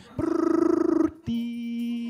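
A man's voice making wordless sound effects into a microphone: a fluttering, buzzing trill about a second long, then a steady held hum-like note.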